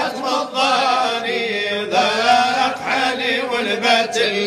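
A sung Arabic devotional chant in praise of the Prophet (madih), the voice drawing out long, wavering melismatic notes.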